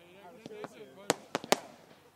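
Fireworks going off overhead: a quick run of sharp bangs and cracks in the second half, the loudest about a second and a half in.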